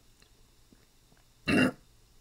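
A man's short, guttural throat-clearing grunt about one and a half seconds in.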